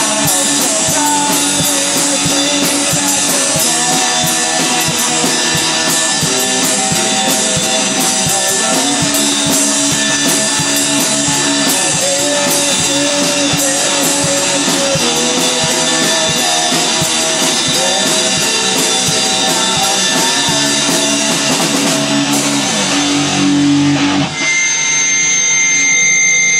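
Rock music with electric guitar and a drum kit, loud and steady with a fast, even beat. About 24 seconds in, the band drops out, leaving a single held high tone.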